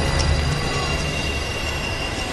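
A dense, sustained sound-effect drone: many high steady tones over noise and a low rumble, easing off slightly toward the end.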